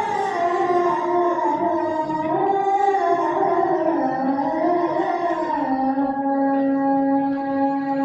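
A man's solo voice chanting one long, drawn-out melismatic phrase. The pitch winds slowly up and down and settles on a long, lower held note near the end.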